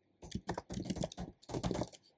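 Typing on a computer keyboard: quick, irregular runs of keystrokes starting a moment in, densest near the end.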